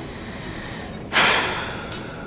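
A man's sharp, loud breath into a close microphone about a second in, fading away over most of a second.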